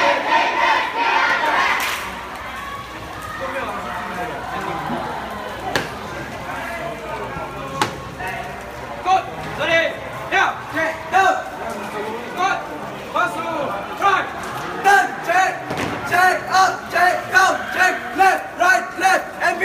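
Drilling cadets shouting short calls in unison, settling in the second half into a steady marching count of about two calls a second, over background chatter. Two sharp knocks come in the quieter stretch before the count.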